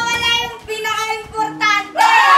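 Young voices singing a few held notes in short phrases.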